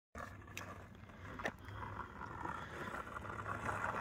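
Skateboard wheels rolling on rough asphalt, a steady rolling hiss that slowly grows louder, with a faint click about one and a half seconds in.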